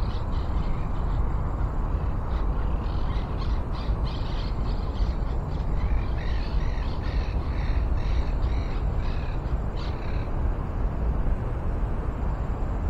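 Birds calling in a quick series of short, arched notes, densest from about six to ten seconds in, over a steady low rumble.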